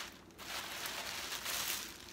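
Sheets of tissue paper rustling and crinkling as they are handled and folded by hand, starting about half a second in.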